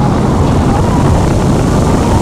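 Wind rushing over the microphone of a roller-coaster train diving down a vertical drop at high speed, with the train's steady rumble on the track underneath.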